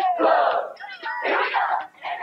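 A crowd of voices shouting and cheering together in two loud bursts.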